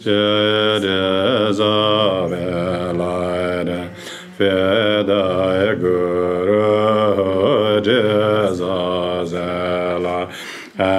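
A man chanting a Tibetan Buddhist prayer in long, steady, sustained lines, with a short pause for breath about four seconds in.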